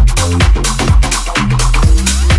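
Tech house DJ mix playing loud: a steady four-on-the-floor kick drum, about two beats a second, under a sustained bass line and hi-hats.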